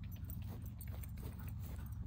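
Quick, light footfalls on grass from a dog running in, mixed with a man's steps, over a steady low rumble.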